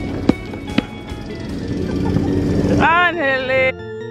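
A rubber basketball bounces twice on asphalt in the first second, against an outdoor background. Near the end a voice shouts with a rising-then-falling pitch, then the sound cuts to background electronic music.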